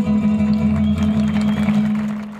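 Live folk-song accompaniment: acoustic guitar strumming over a steady, held low note as the song closes, with a last higher held note thinning out in the first second.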